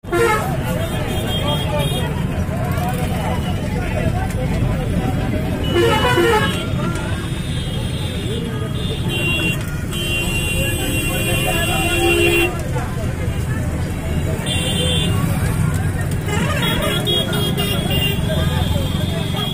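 Inside a moving bus: steady low engine and road rumble with horns sounding several times, the longest held for a couple of seconds about ten seconds in, over background voices.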